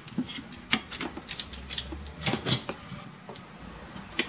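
Clicks and light rattles of computer hardware being handled as a graphics card is taken out of the motherboard, with a sharp click about a second in and a cluster of clicks past the middle.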